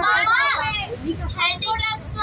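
Raised, high-pitched voices of people crowding in, a child's voice among them, over a low rumble.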